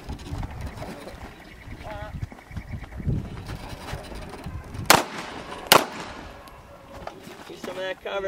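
Two pistol shots, sharp cracks a little under a second apart, about five seconds in.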